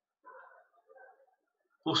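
A faint bird call, heard twice in a short pause, the first about a quarter second in and the second about a second in.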